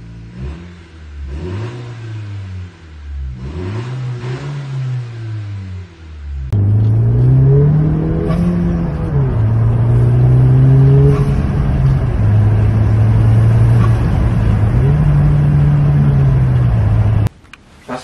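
10th-generation Honda Civic Si's turbocharged 1.5-litre four-cylinder revved in a string of short rises and falls while parked. About six seconds in it turns louder, with a rev that rises and falls, then the engine held at a steady speed and revved once more before cutting off suddenly.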